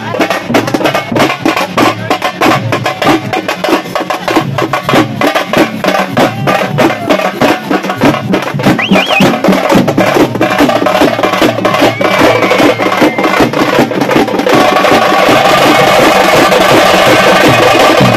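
Several frame drums (tamate) beaten with sticks in a fast, driving rhythm. About two-thirds of the way through, the separate strokes merge into a dense, steady roll.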